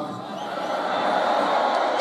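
Large stadium concert crowd cheering and shouting, a steady mass of voices that swells a little in the first second, with a few faint whistles.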